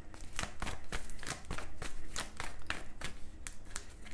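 A tarot deck being shuffled by hand: a quick, irregular run of card clicks and slaps, about four or five a second.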